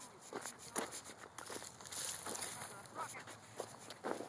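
Footsteps walking over dry grass and dirt, an irregular series of soft steps, with faint voices in the background.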